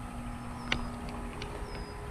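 Quiet outdoor background: a faint steady hum, a short high chirp repeating about once a second, and a single click a little past the middle.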